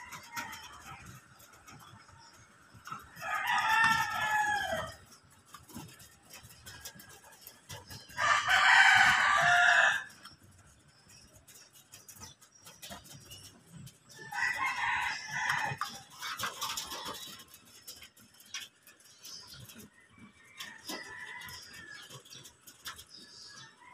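A rooster crows three times, each crow about two seconds long and a few seconds apart, the middle one the loudest, with a fainter crow near the end. Between the crows come faint taps of pigeons pecking rice off a corrugated metal roof.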